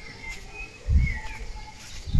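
Birds chirping faintly in the background, a few short high calls, with a brief low rumble about a second in.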